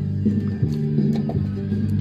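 Music playing loud and bass-heavy from the Jeep's car stereo through its Rockford Fosgate door speakers.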